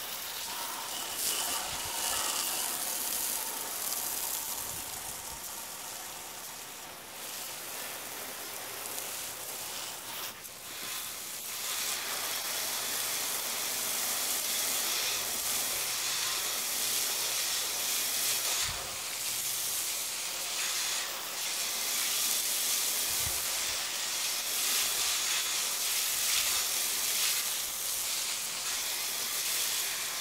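Garden hose spray nozzle hissing steadily as it mists water over dry-poured concrete mix to wet it. The spray is a little softer for a few seconds in the middle, then fuller.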